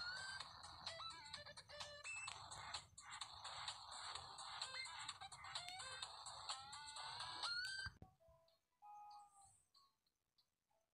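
Background music made of many short pitched notes, some sliding upward in pitch. It cuts off abruptly about eight seconds in, leaving only a few faint short tones.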